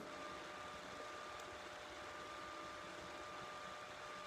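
Faint steady room tone: a low hiss with a thin, steady high hum.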